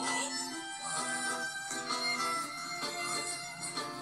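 Background music from a TV drama's soundtrack, with held melodic notes changing every half second or so, heard from a television's speaker.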